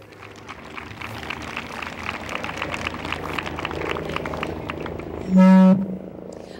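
Audience applause: dense, irregular clapping that builds over about five seconds. Near the end a short, loud, steady tone cuts in over it.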